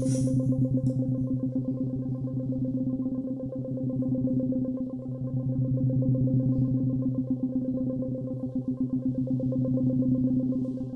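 Experimental music for four modified clarinets and electronics: one low pitch held steady with strong overtones, pulsing rapidly.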